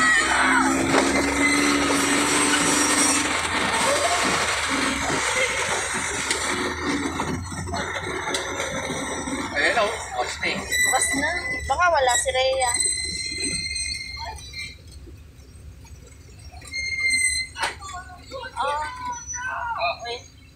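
Road noise heard from inside a moving small passenger vehicle: engine and street traffic noise, with a steady low tone for the first few seconds. The noise dies down over the second half, leaving quieter voices and music.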